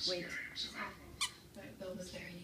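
Squeaker inside a plush toy duck squeaking as a dachshund bites on it, with a short sharp squeak about a second in.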